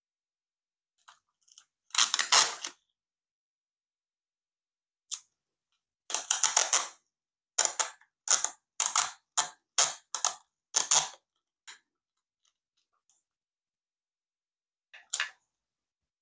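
Clear sticky tape being pulled off the roll of a Sellotape desk dispenser: one pull about two seconds in, then a run of short pulls about twice a second from about six to twelve seconds in, and one more near the end.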